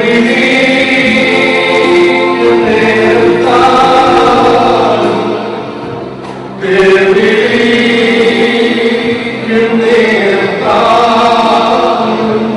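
A group of voices singing a slow funeral hymn together in long held notes, with a short break about six seconds in before the next phrase.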